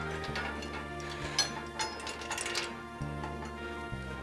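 Soft background music with steady held chords, and a few light metallic clicks and clinks from the traction unit's strap hooks and buckles being handled, in the middle.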